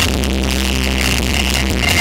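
Live Roma band music from clarinet, electric guitar, keyboard and drums, over a deep bass note held steady.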